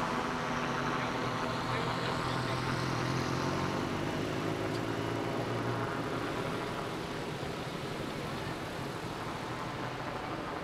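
A motor vehicle engine running with a steady low hum over street traffic, the hum fading out about six seconds in.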